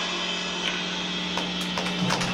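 Semi-hollow electric guitar left sounding through its amplifier once the song stops: one steady low tone with faint higher overtones, and a couple of small clicks.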